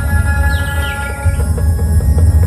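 Dhumal band music played loud through a big sound setup: heavy bass under sustained keyboard notes, with a falling glide about half a second in and sparse drumming.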